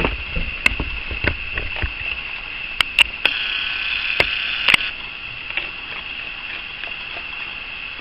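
A raccoon chewing dry kibble: a scattering of short, sharp crunches and clicks at irregular intervals.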